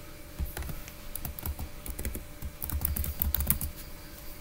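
Typing on a computer keyboard: an irregular run of key clicks that starts about half a second in and stops shortly before the end.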